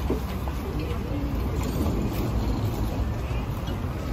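Outdoor market ambience: faint, indistinct voices of people nearby over a steady low rumble.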